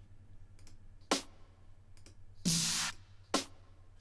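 Snare drum samples in Logic Pro's Drum Machine Designer auditioned one at a time while a new snare is chosen. There is a short sharp hit about a second in, a longer, louder noisy snare with a low tone at about two and a half seconds, and another short hit just after. Faint mouse clicks fall between them.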